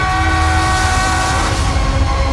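Trailer score under a title card: a loud, sustained horn-like chord held over a deep rumble. An airy whoosh swells in at the start and fades out about a second and a half in.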